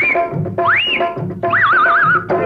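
Film song music with a steady drum beat, over which a high voice-like call swoops up in pitch about every half second, then warbles rapidly near the end.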